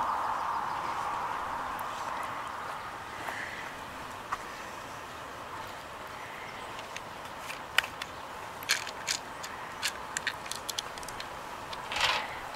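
A scattered run of small sharp clicks and taps in the second half: cat treats being tipped out of a small treat bottle and set down on concrete. A faint steady rush fades away over the first few seconds.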